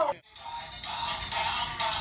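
A motorised plush toy dog playing its electronic song, tinny synthesised singing with a backing tune, starting after a very short gap near the start.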